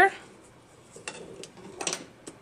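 Faint handling sounds of a stick shuttle being passed through the shed of a frame loom: a light click about a second in, then a brief rustle and tick of yarn and shuttle near the end.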